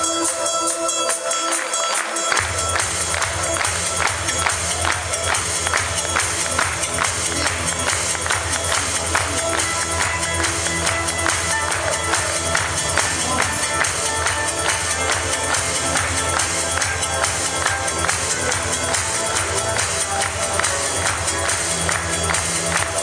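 Posing-routine music with a steady, driving beat. The bass is missing at first and kicks back in about two seconds in.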